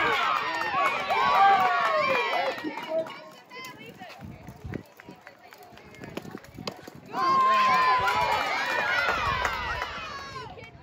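A softball team's girls shouting and cheering together, many high voices at once. A loud stretch lasts the first few seconds, and a second begins about seven seconds in with one long held call.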